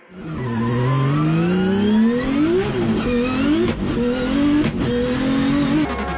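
Drift car's engine revving hard, starting abruptly: its pitch climbs steadily for about two and a half seconds, then falls and climbs again several times, with two short breaks in the sound near the middle.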